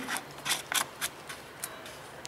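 Plastic screw cap of a brake fluid reservoir being turned shut by hand: a series of about six short clicks and rasps.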